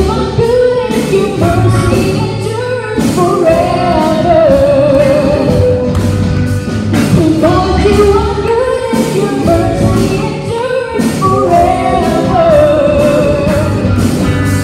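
A live worship band playing a song, with women singing the melody over electric guitar to a steady beat.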